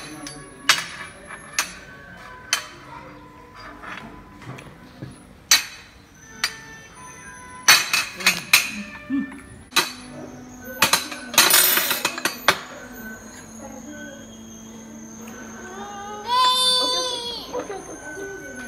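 Metal spoons clinking and scraping against ceramic plates and a glass bowl, in sharp, scattered clinks with a denser clatter about two-thirds of the way through. Near the end a toddler gives a drawn-out, high-pitched vocal sound.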